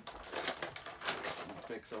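Clear plastic blister packaging of a boxed action figure crackling and clicking in quick, irregular snaps as it is handled and worked open.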